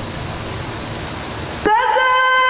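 Steady background noise, then near the end a reciter's voice enters on one long, held melodic note, the start of a chanted Quran recitation (tilawah).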